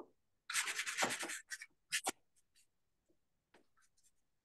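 Pastel stick scratching across paper in a quick run of strokes lasting about a second, then two short strokes, as greenery is laid into a painting.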